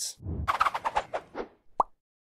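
Logo sound effect: a quick run of clicky, pitched pops that fades over about a second and a half, then a single short pop near the end.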